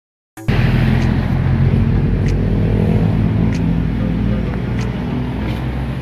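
A motor running steadily with a low hum, starting abruptly after half a second of silence, with faint ticks over it.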